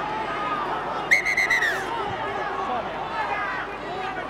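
Stadium crowd murmuring and chattering, with a single sharp whistle blast just under a second long about a second in, a steady high tone that dips slightly in pitch as it stops.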